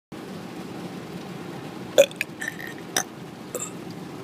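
A boy lets out a short, loud burp about two seconds in, followed by a few smaller, sharp sounds. It is heard over the steady low rumble of a moving car's cabin.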